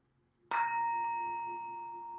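Small singing bowl struck once about half a second in, then ringing with a clear, steady tone that slowly fades. The bell marks the end of the meditation.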